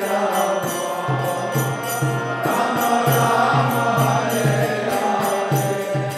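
Kirtan music: group chanting of a mantra over sustained harmonium, with a mridanga drum beating low and small hand cymbals striking in a steady, even rhythm.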